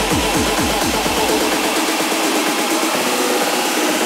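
Electronic dance music from a DJ mix: a rapid run of kick drums falling in pitch, which thins out about two and a half seconds in as the bass drops away, leaving a dense build-up.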